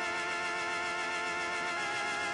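Background music: a sustained synthesizer chord held steady, with no beat.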